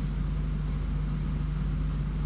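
A steady low hum with an even hiss of background noise.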